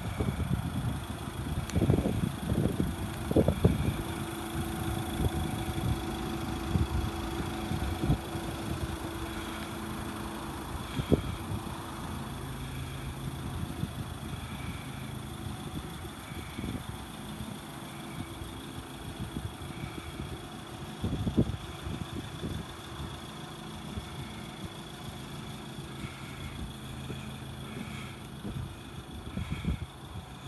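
Iveco Daily van's diesel engine idling steadily, with irregular low thumps from handling and wind on the microphone, heaviest near the start and about two-thirds of the way through.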